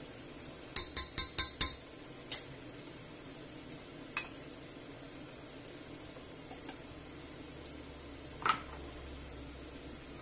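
A metal spoon clinks five times in quick succession against a stainless steel pot, knocking off sweet paprika, followed by a few single lighter clinks. Underneath, onion, garlic, pepper and tomato sauce sizzle faintly and steadily in hot olive oil.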